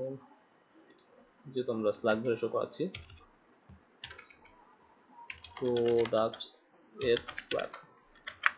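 Typing on a computer keyboard, a few short runs of key clicks, with brief stretches of a voice speaking in between.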